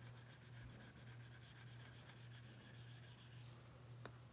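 Faint rasping of a stylus tip rubbed quickly back and forth across a tablet screen in short shading strokes, easing off near the end, over a low steady hum.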